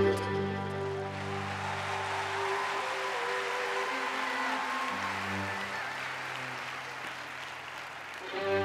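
String orchestra holding quiet sustained chords that shift a few times, with audience applause over them.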